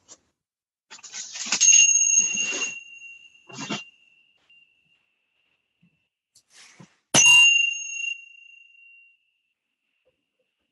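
A small hand-held bell is struck twice, about five and a half seconds apart, to signal the start of a meditation. Each strike rings with a clear high tone that fades over about two seconds. Handling rustle is heard around the first strike.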